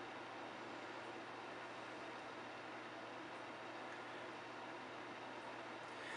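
Faint, steady hiss with a low hum underneath: room tone.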